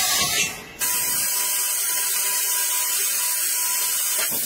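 Laser tube-cutting machine cutting a steel pipe: a brief mechanical sound, then, under a second in, a steady high hiss of the cutting head at work, with a faint steady tone under it.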